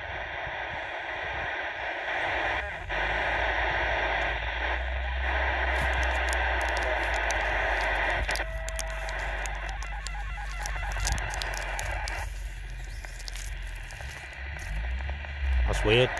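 CB radio receiver hissing static through its speaker while its channel knob is turned through the band: the noise breaks and changes several times as the channels switch, with a short steady tone about halfway through. A low rumble runs underneath.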